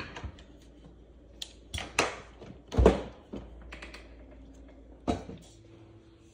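Irregular knocks and clicks of things being handled and set down on a kitchen counter, with one heavier thump near the middle.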